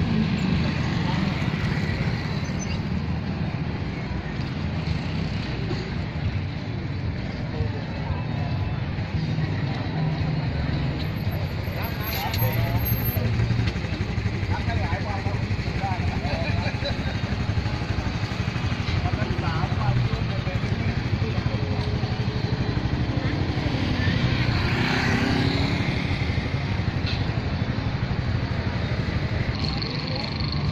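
Street and market ambience: motorbike and car engines running past, with people talking.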